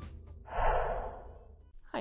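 The tail of intro music fades out, then one breathy rush of air comes about half a second in and dies away over about a second: a person drawing breath into the microphone.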